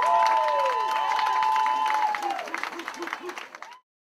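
Club audience clapping and cheering with whoops over a long held high note, thinning out in the second half. The sound cuts off suddenly near the end.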